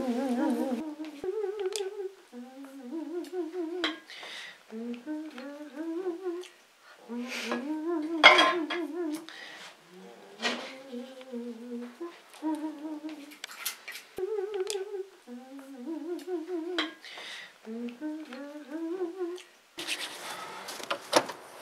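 A person humming a tune in short phrases with a wavering pitch, over occasional clinks of dishes and utensils. The sharpest clink comes about 8 seconds in.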